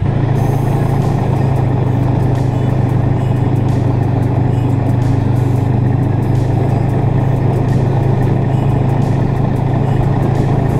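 Snowmobile engine running at a steady, constant speed, heard from on board the moving sled.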